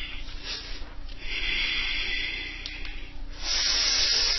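A person's breathing, heard as three hissing breaths, the middle one long with a faint whistle in it.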